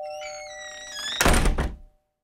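The last held note of a Roland E-28 keyboard dies away under high, gliding electronic sound-effect tones. A little over a second in comes a short, loud thunk-like noise burst, and then the sound cuts off.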